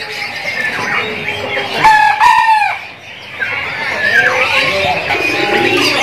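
Caged birds calling, with one loud call holding a steady note about two seconds in, followed by other shorter, sliding calls.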